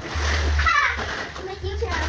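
Water splashing in a shallow inflatable paddling pool as a child moves through it, loudest in the first half second, with a child's short high voice about a second in.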